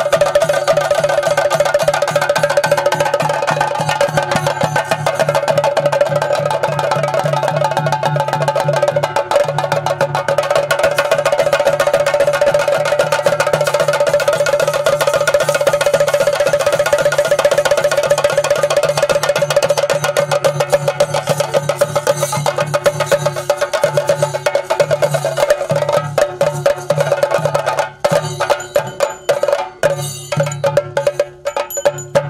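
Chenda drums beaten in a fast, dense roll, with a steady ringing tone held above the drumming. Near the end the roll breaks up into separate, spaced strokes.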